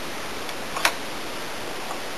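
A single sharp click a little under a second in, from clamps being handled on the glued-up coaming strips, over a steady hiss.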